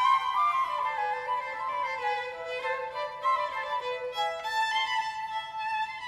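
Flute and violin playing a lively Baroque allegro together, accompanied by a small string ensemble with violins and cellos.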